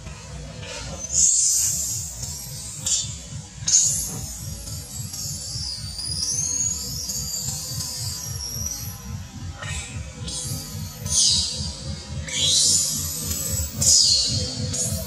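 Background music with a steady beat, over a baby long-tailed macaque screaming several times in high-pitched cries that waver and glide in pitch.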